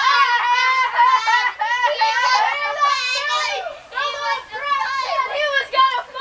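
A child talking continuously in a high-pitched voice, with a brief pause about four seconds in.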